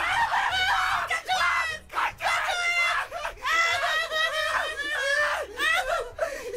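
High-pitched cartoon voices laughing hysterically and shrieking, in a run of bursts with brief breaks.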